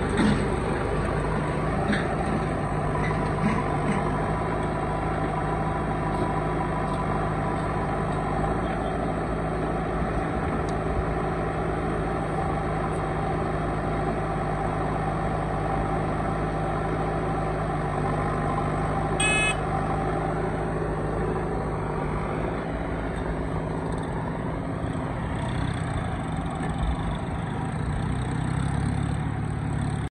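Diesel engines of a JCB 3DX backhoe loader and a John Deere tractor running steadily together. About two-thirds of the way through there is one brief high-pitched beep.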